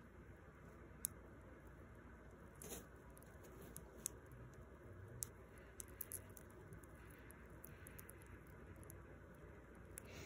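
Faint, scattered little clicks of a hamster nibbling pumpkin seeds, over near silence.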